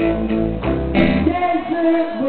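Live band music: a strummed electric guitar with held chords, a new strum about a second in, and a sung vocal line.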